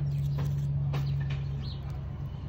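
A few short, high chirps from a juvenile house sparrow, over a steady low hum.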